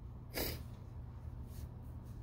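A single quick, sharp breath through the nose, about half a second in, over a low steady room hum.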